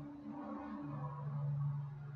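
A low steady hum on one or two fixed low notes, its lowest note broken up for about the first second.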